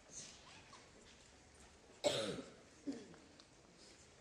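A person coughing in a hushed auditorium: one loud cough about two seconds in and a shorter one just under a second later.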